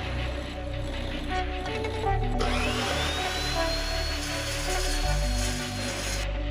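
Background music, with a metal-cutting chop saw joining it about two seconds in. The saw's motor whine rises as it spins up and then holds steady while the blade cuts through steel tube.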